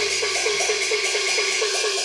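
Cantonese opera percussion playing a fast, even roll of gong strokes, about six a second, each one sliding down in pitch, between sung lines.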